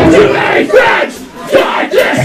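Loud shouting voices during a break in a heavy rock band's playing, the bass and drums dropping out for a moment; the shouting dips briefly about halfway through.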